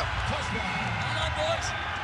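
Stadium crowd cheering a rugby try: a steady wash of many voices.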